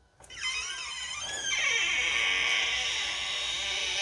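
Sound effect played by the built-in sound module of a coffin-shaped tarot deck box, triggered as the lid is opened and heard through the box's small speaker. It starts with wavering, sliding tones and settles into a steady, thin, high hiss-like sound with little bass.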